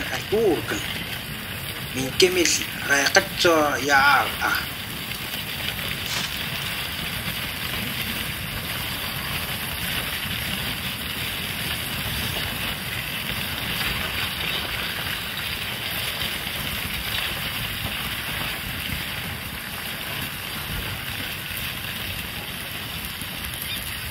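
Steady crunching and scraping of a reindeer sledge caravan moving over snow: wooden sledge runners and hooves on the snow crust. A person's voice is heard briefly about two seconds in.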